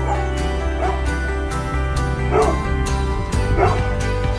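A dog yipping in short barks about four times over background music with a steady beat.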